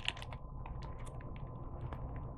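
A plastic snack wrapper being peeled open by hand, crinkling in a scatter of small, irregular clicks.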